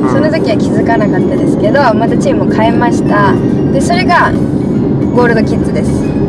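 Two people talking inside a car's cabin, over a steady low rumble of road noise and faint background music.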